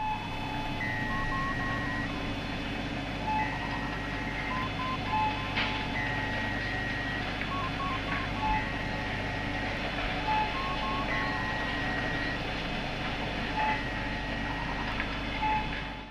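Electronic sci-fi soundscape: a steady low hum under a repeating sequence of short, computer-like bleeps at a few different pitches, the pattern coming round about every two and a half seconds.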